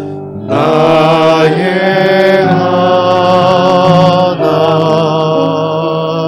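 Singing of a slow Korean worship song, each note held for about a second with vibrato, resuming after a short breath about half a second in.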